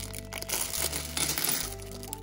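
Clear plastic LEGO parts bag crinkling as it is shaken open, with small plastic bricks clicking as they spill onto a table, over background music.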